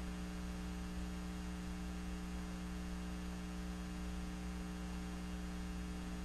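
Steady electrical mains hum on the recording, a low buzz with a few fixed tones and faint hiss above, unchanging throughout.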